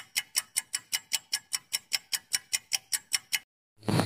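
Countdown timer's ticking-clock sound effect: quick, even ticks, about six a second, that stop a little over three seconds in, marking the answer time running out.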